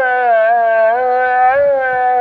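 A male muezzin chanting the ezan (Islamic call to prayer) over the minaret loudspeaker: one long, ornamented note whose pitch wavers up and down in melismatic turns.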